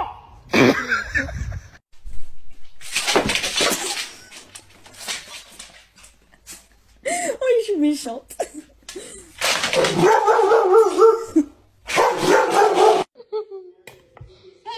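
A dog whining and barking in several separate bursts, with pitched calls that slide downward and waver.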